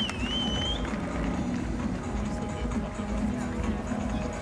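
Music playing under a low murmur of crowd voices, with one short, high, wavering whistle in the first second.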